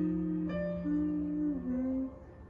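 Digital piano played slowly: a held chord over a low bass note, with new melody notes struck about half a second and one second in and again near the end, as the bass note fades away.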